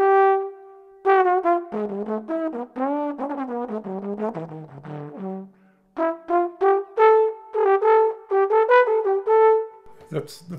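Solo trombone playing a Latin-style phrase with a swinging jazz lick: a held note, then a lower passage with sliding, curving pitches, then a run of short, single-tongued accented notes ending on a longer held note.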